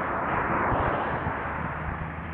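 A car passing on the road: tyre and road noise swelling up in the first second and fading away, over a low rumble.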